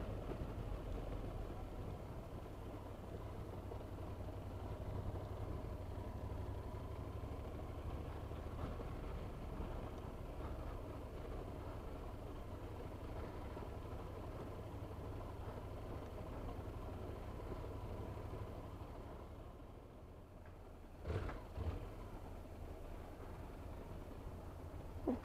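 Honda NC750X motorcycle's parallel-twin engine running steadily at low speed, with low road rumble from its tyres on cobblestones, heard from on the bike. A couple of brief knocks come near the end.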